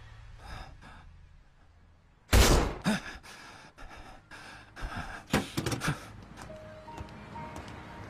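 Dramatic film soundtrack: a hushed stretch, then one sudden loud impact a little over two seconds in, followed by several shorter knocks and gasping breaths over faint music.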